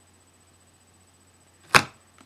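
A single sharp knock from handling hard plastic card holders, near the end, over a faint low electrical hum.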